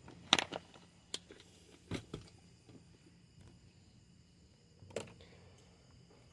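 Mostly quiet car interior with a few short clicks and knocks of handling: the loudest just after the start, a pair about two seconds in, and one near the end.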